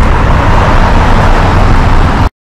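Steady, loud road traffic noise from cars passing at a city intersection, with a heavy low rumble.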